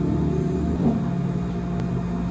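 Thick melon shake sliding out of a tipped blender jar into a plastic cup, with a soft plop about a second in, over a steady low machine hum.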